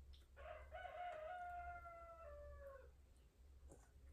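A rooster crowing once, faintly: one long call of about two and a half seconds that drops in pitch at the end.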